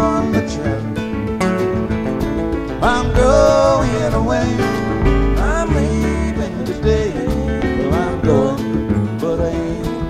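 Live acoustic country-bluegrass band playing: acoustic guitars, bass and drums on a steady beat, under a melody line of sliding, held notes.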